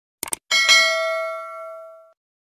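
Subscribe-animation sound effect: a quick double mouse click, then a bell chime struck about half a second in that rings on and fades away.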